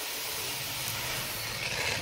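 Pearl millet (bajra) grain pouring in a steady stream from a bag into a plastic tub of mixed grain: a continuous rustling hiss.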